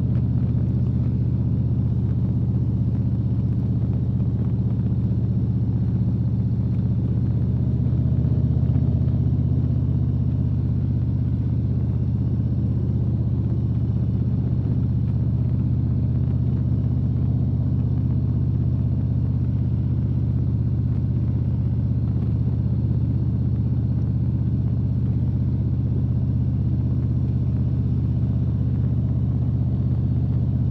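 Touring motorcycle engine running steadily at a constant cruising speed, heard from the rider's seat, with wind and road noise.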